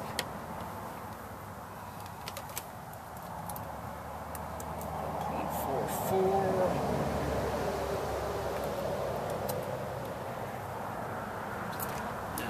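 Scattered light clicks as multimeter probe tips are touched to golf cart battery terminals, over a low steady rumble that grows louder about halfway through.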